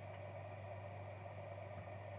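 Room tone: a steady low hum with faint even hiss, nothing else happening.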